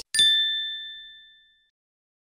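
A single bright bell-like ding, struck once just after the start and ringing down over about a second and a half.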